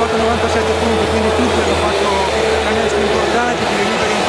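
Loud hubbub of a crowd of many people talking at once in a basketball arena's stands, over a steady low hum.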